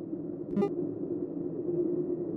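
Low, steady ambient drone with a single short, bright ping about half a second in.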